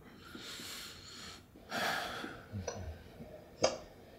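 Soft breaths close to a microphone: two puffs of air in the first half, then a single sharp click near the end.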